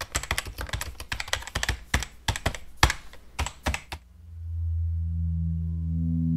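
Quick irregular clicking like typing on a computer keyboard, a sound effect laid over an animated logo. About four seconds in, the clicks stop and a low, steady droning tone with several pitches swells in.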